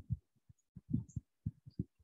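Faint, soft low thumps, about a dozen at irregular intervals, with no speech.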